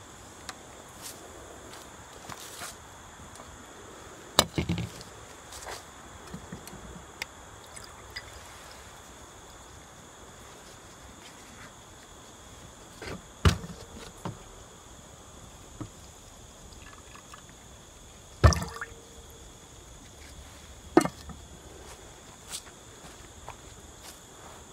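Acid solution (aqua regia) trickling and dripping as it is poured into a filter funnel over a glass beaker, a soft steady hiss. A few sharp knocks of glassware come in between, the loudest two about halfway through and later on.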